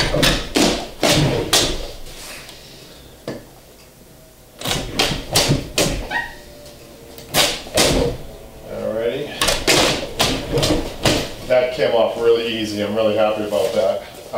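Stapled upholstery border fabric being pulled off an old chair's frame, tearing free of its staples in several runs of sharp snaps and rips with short pauses between.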